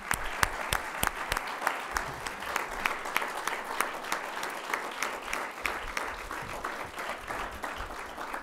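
A large audience applauding steadily, many hands clapping at once with individual sharp claps standing out.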